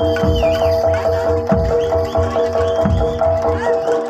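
Live East Javanese jaranan ensemble music: heavy low drum strokes about every second and a quarter over steady held notes, with a high wavering melody bending above them.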